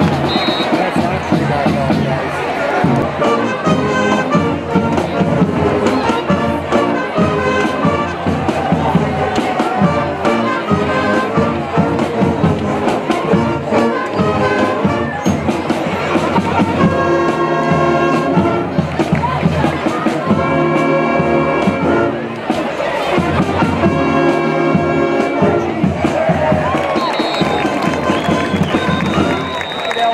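Brass band playing, trumpets and trombones, over crowd noise and cheering, with strong held chords in short blocks in the second half.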